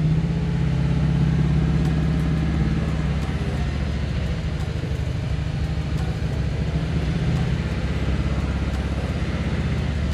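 Infiniti M56's 5.6-litre VK56VD direct-injection V8 running steadily at a fast idle of around 2,000 rpm, held there by hand on the throttle and a little shaky, while it ingests Seafoam through the crankcase vent line during an intake-valve carbon-cleaning treatment.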